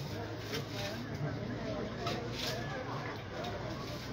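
Faint voices in the background, with a few short dry crackles and rustles of broom straw stalks being handled by hand.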